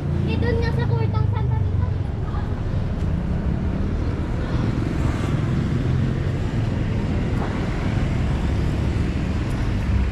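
Street traffic noise: a steady rumble of passing vehicles, with a short stretch of nearby voices in the first second or two.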